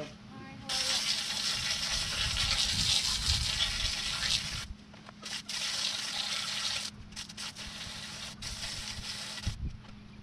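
Water spraying from a hose spray nozzle: a steady hiss for about four seconds, then shorter stretches that stop and start several times.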